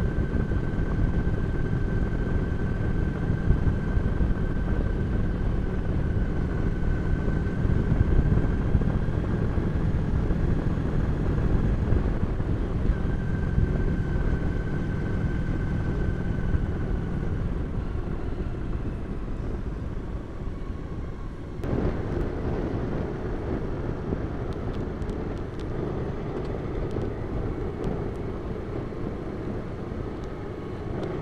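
Motorcycle engine and wind rush at steady cruising speed, heard through an onboard camera, with a faint high whine that comes and goes in the first half. About two-thirds through, the sound changes abruptly to the onboard engine and wind noise of a following Suzuki Burgman scooter.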